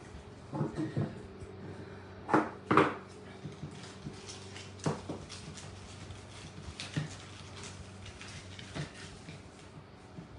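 Crafting handling noises: ribbon and plastic wall-tile pieces rustled and tapped on the tabletop, with a few short sharp sounds, the loudest a pair about two and a half seconds in. A faint steady hum runs underneath.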